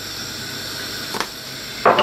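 Mince and tomato sauce simmering in a pan, a steady hiss and bubble. A light click about a second in and a sharper knock near the end.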